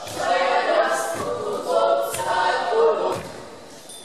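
Several voices singing together a cappella, without instruments, in short phrases that fade near the end.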